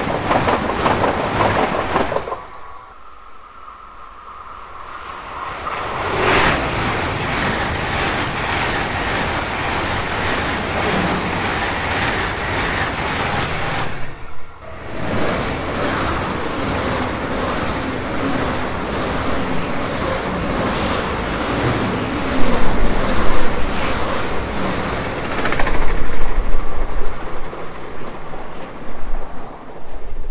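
ICE high-speed train passing through the station, with a steady loud rush of wheels and air and a clatter over the rail joints. The noise drops away briefly twice. Near the end it surges in heavy gusts of wind on the microphone as the last cars go by.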